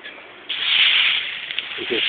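Expanded clay pebbles rustling and grating against each other as a hand pushes into the bed of grow medium, a rough hiss that starts suddenly about half a second in.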